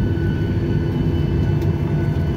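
Cabin noise of a jet airliner taxiing after landing: a steady low rumble of engines and airframe with a faint steady engine whine above it.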